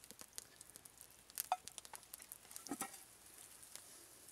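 Butter melting and sizzling faintly in a hot frying pan on a campfire, with scattered crackles and pops. Two brief, slightly louder sounds come about one and a half and three seconds in.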